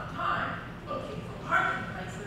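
Distant voices of actors speaking on stage, carried through a hall, in short bursts.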